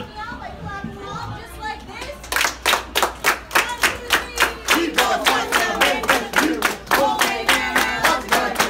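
A group of people clapping in unison, a steady beat of about three claps a second that starts a couple of seconds in, with voices joining in over the clapping from about halfway.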